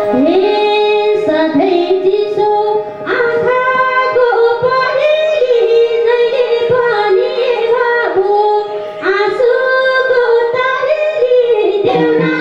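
A woman singing a Nepali lok dohori folk song verse into a microphone, over instrumental accompaniment with a steady held note beneath the voice. The line breaks briefly about three seconds in and again about nine seconds in.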